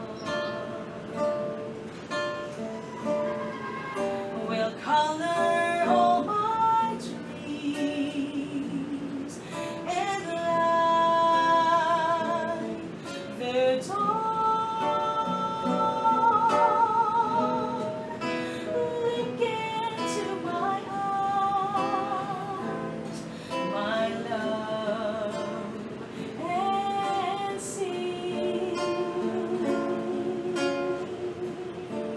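A singer serenading with a love song over strummed acoustic guitar. Several notes are held long with a wavering vibrato.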